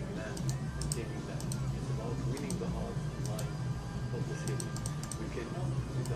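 Irregular, scattered clicks of a computer mouse and keyboard, bunching together near the end, over a low steady hum.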